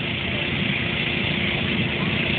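Steady, unbroken drone of the electric blower fan that keeps an inflatable bounce house inflated, with a constant low hum running under it.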